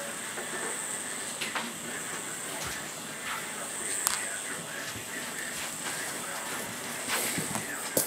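Steady background hiss with a thin high whine, broken by a few faint light ticks.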